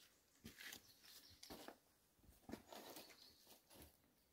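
Near silence broken by a run of faint, short rustles and scuffs: a hiker's footsteps and brushing through leafy shrubs on a mountain trail.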